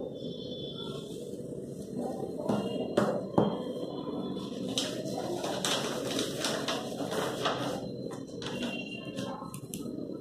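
Paper strips sliding out through the slots of a handmade card page: a run of short papery rasps in the middle, after a couple of light knocks about three seconds in, over a steady low background murmur.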